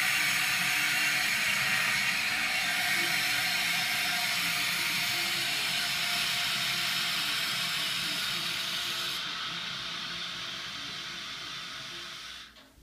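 Toilet tank refilling: water hisses steadily through the ball-float fill valve. The hiss slowly gets quieter as the float rises and the valve closes off, losing its highest hiss about nine seconds in.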